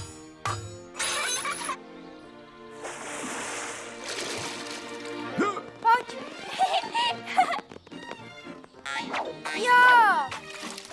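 Cartoon soundtrack: background music with splashing water effects as buckets of water are poured into a wooden tub, and a few short wordless character vocal sounds.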